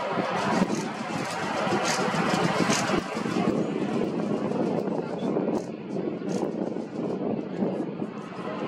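Bombardier DHC-8-402 (Dash 8 Q400) turboprop airliner taxiing, its two Pratt & Whitney Canada PW150A engines giving a steady, even engine noise, with indistinct voices nearby.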